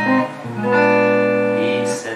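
A man sings a Spanish worship song, holding a long note, accompanied by an electric guitar.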